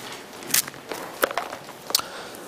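Bible pages being turned: a few crisp paper flicks and rustles, the sharpest about half a second in, a little past one second, and near the end.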